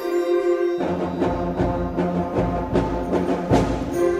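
Seventh-grade middle school concert band playing. About a second in, a held chord gives way to a fuller passage as low instruments and drums come in with repeated accented strikes, the loudest hit near the end.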